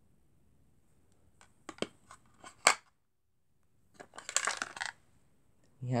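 Small hard plastic vintage Star Wars action figures clicking and clattering against the compartments of their plastic storage case as one is put back and another taken out: a few sharp clicks, the loudest about two and a half seconds in, then a short rattle about a second later.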